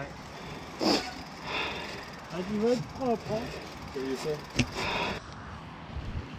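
Mountain bike riding over a dry, leaf-covered dirt trail: a steady rush of tyre and wind noise, with two sharp knocks from the bike, about a second in and again near the five-second mark.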